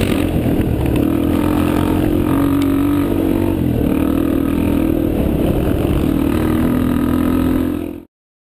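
Off-road motorcycle engine running steadily at trail speed, heard from the rider's own bike, its pitch dipping and rising a few times with small throttle changes, over wind noise on the microphone. The sound cuts off suddenly near the end.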